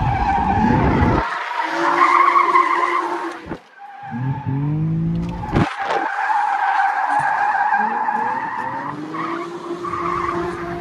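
Infiniti G35 with its VQ V6 drifting, heard from inside the cabin: the tyres squeal in a steady high screech while the engine revs rise and fall beneath it. The sound breaks off abruptly a few times where clips are cut together.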